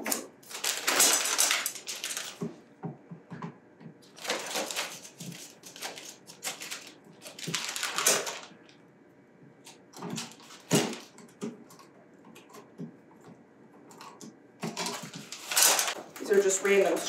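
Plastic zipper bag crinkling in several short bursts as screws and outlet cover plates are dropped in, with small clicks and taps of a screwdriver and metal screws, one sharp click about two-thirds of the way through.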